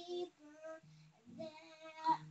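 A young girl singing softly in short, quiet phrases, with brief pauses between the notes.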